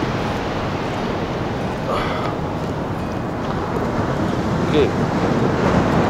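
Ocean surf washing steadily on the beach, with wind on the microphone, and a brief short sound about two seconds in.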